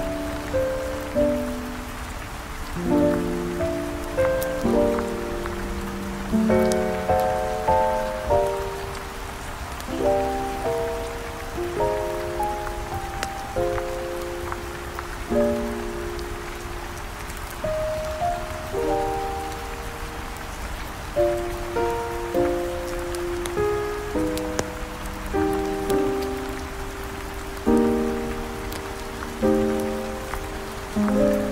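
Steady rain falling, mixed with slow, soft jazz: chords struck about once a second or two, each fading before the next.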